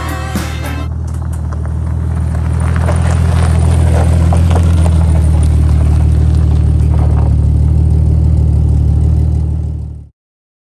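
Sung music cuts off about a second in. Then a Jeep's engine runs close by with a steady low note, growing louder over the next few seconds and holding steady until it fades out at the end.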